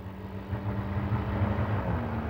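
A Tata Sumo SUV's engine running as it drives up, a steady low hum growing louder as it comes closer.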